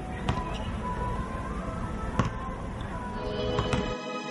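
A basketball bouncing on a hard outdoor court: a few sharp bounces, the loudest about two seconds in, over steady background noise. Music comes in near the end.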